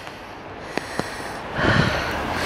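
A person's breath drawn in or sniffed close to the microphone, a short noisy rush starting about a second and a half in. It follows two faint clicks.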